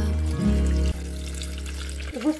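Background music with long held notes, over water being poured from a plastic bottle into a plastic blender jug.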